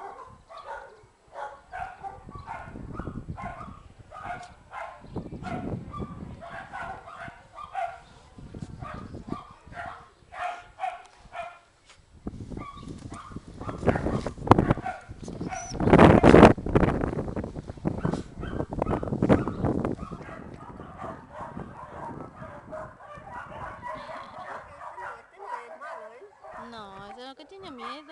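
Dogs barking repeatedly, about two short barks a second, with a loud stretch of noise in the middle and more barking near the end.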